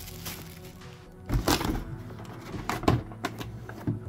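Clear plastic packaging rustling and parts being handled in a cardboard box, in a few short rustles about a second and a half, three seconds and four seconds in, over steady background music.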